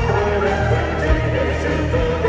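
A symphonic metal band playing live at full volume: a steady drum beat and distorted guitars, with a wavering high melody line over the top.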